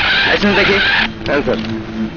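A vehicle's brakes squeal for about a second as it pulls up, cutting off abruptly, with voices and a steady low hum under it.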